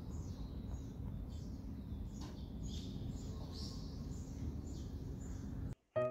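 Small birds chirping, many short high chirps, over a steady low outdoor rumble; it all cuts off suddenly near the end.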